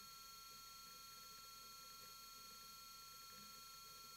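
Near silence: a faint steady background hiss with a few thin steady high tones.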